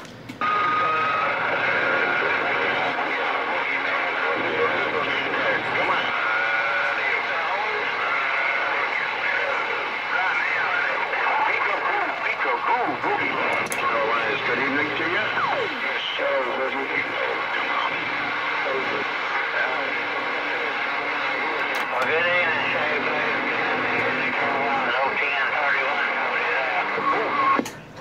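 A Galaxy CB radio's speaker carrying a busy channel while the operator listens: several voices overlapping one another, garbled and hard to make out, with a brief steady whistle about half a second in.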